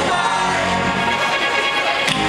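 Live band music recorded from the audience: a rock song with held chords and a singing voice, at a steady loud level.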